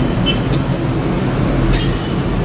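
A steady low mechanical hum and rumble, with a short hiss about half a second in and a longer hiss near the end.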